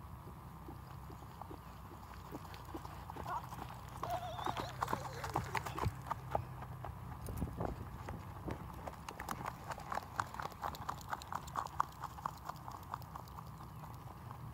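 Horse's hoofbeats on the grass field as it runs the barrels, a quick even run of strikes that grows loud about two-thirds of the way in as the horse passes close, then fades as it moves away.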